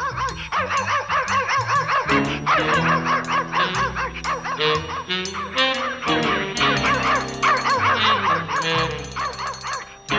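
Cartoon dogs yapping in quick, overlapping yips over an orchestral music score, with the low accompaniment growing fuller about two seconds in.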